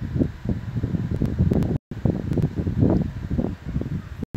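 Irregular low rumbling and rustling noise picked up by the microphone, rising and falling in short swells, with one brief dead gap about two seconds in.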